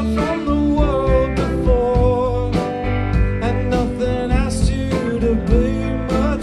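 A band playing live, a country-rock song with guitars and a strong bass and drum beat, and a wavering lead melody line.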